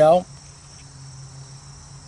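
Insects chirping in a steady, high-pitched drone.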